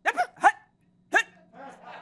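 Three short, high yelps like a dog barking: two quick ones, then a third about a second later, each rising in pitch.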